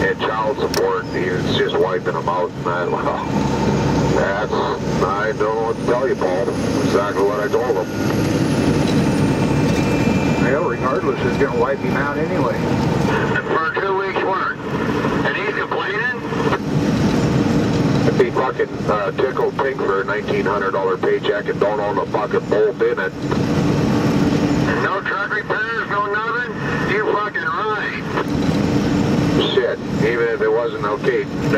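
Steady engine and road noise inside a vehicle's cab at highway speed, with people talking over it.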